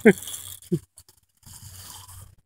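A man's laugh trailing off at the start, then only faint background noise with a short drop-out a little after a second in.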